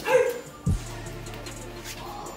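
A short, loud yelp-like call near the start, then a dull thump about half a second later, over faint steady background music.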